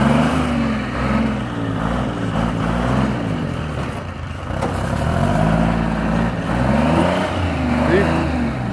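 Timberjack 225 cable skidder's diesel engine revving up and down repeatedly as the machine is manoeuvred, with the revs dropping briefly about halfway through.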